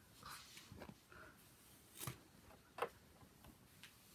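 Near silence: room tone, broken by two short, sharp taps, one about two seconds in and a louder one just under three seconds in.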